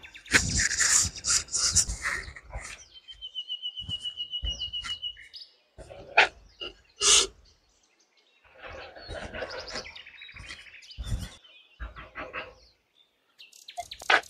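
Small birds calling outdoors. About three seconds in, one gives a fast trill of evenly repeated notes lasting about two seconds, with short chirps after it. Scattered rustles and knocks run between the calls.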